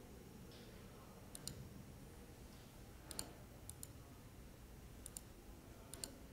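Faint computer mouse clicks, several times in quick pairs, over quiet room tone.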